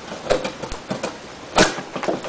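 Gerber Profile knife blade carving into a wooden post: a string of short scraping cuts and clicks, the loudest about a second and a half in.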